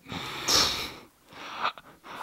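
A man's breathy exhale through the nose, a snorting scoff of frustration lasting about a second, followed near the end by a few faint clicks.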